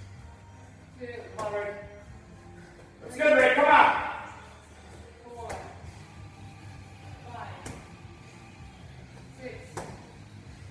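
A man shouting encouragement in several bursts, loudest about three seconds in, with a few sharp thuds of a 20-pound medicine ball striking the wall during wall-ball throws.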